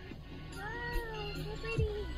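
A cat meowing: one drawn-out call that rises and falls in pitch, followed by a shorter held note near the end.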